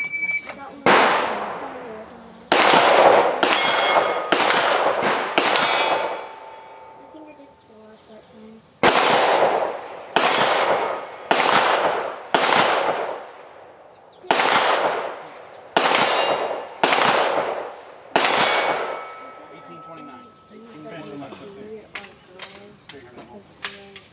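9mm Glock 17 Gen4 pistol fired in quick strings at steel targets: about six shots, a short pause, then about a dozen more in rapid succession. Each shot echoes off the range, and the steel plates ring briefly when hit.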